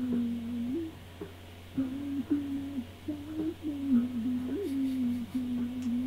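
A voice humming a slow melody in long held notes, with small scoops between them and a short pause about a second in.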